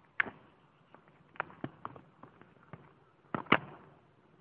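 Gunfire in an exchange of fire: about eight sharp shots at irregular intervals, the loudest just after the start and a second or so before the end.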